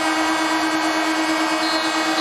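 Arena end-of-game buzzer sounding one steady, buzzy tone at a single pitch, held throughout: the signal that the game clock has run out at full time.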